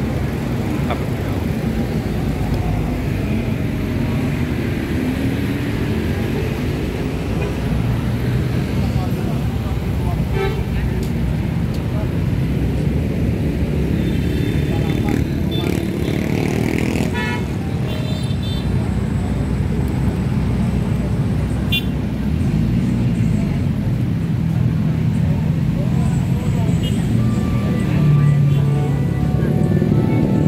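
Busy street-market ambience: a steady rumble of road traffic under a background of people's voices, with some music.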